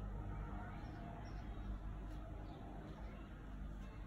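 Quiet room tone: a steady low hum with a faint hiss, and no distinct events.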